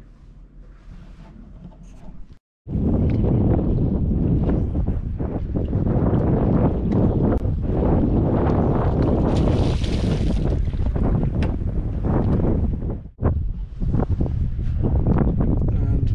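Faint room tone for the first couple of seconds, then, after a brief dropout, loud wind buffeting the microphone: a rough, low rumbling noise that keeps going, with a short dip about thirteen seconds in.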